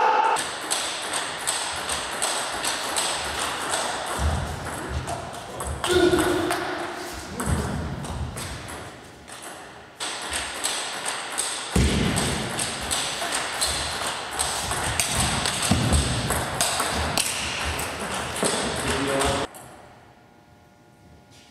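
Table tennis ball clicking repeatedly off bats and table, with low thuds of footwork on the court floor. A player's voice is heard briefly about six seconds in.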